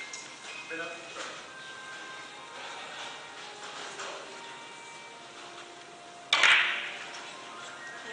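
A single sharp click of carom billiard balls striking, about six seconds in, ringing briefly in a large hall. Under it is the low murmur of the hall.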